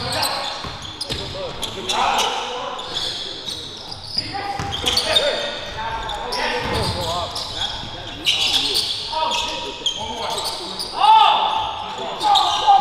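Live basketball game sound in a gym: the ball bouncing on the hardwood court and sneakers squeaking in short sharp chirps, the loudest about eleven seconds in, with players' indistinct shouts and a large hall's echo.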